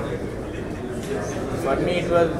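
A man's speech in a brief pause: quieter fragments of talk in the second half, over a steady background hum of the room.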